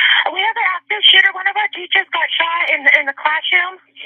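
Voices heard over a telephone line: a recorded 911 emergency call between a caller and a dispatcher, the speech thin and narrow, with a faint steady hum on the line.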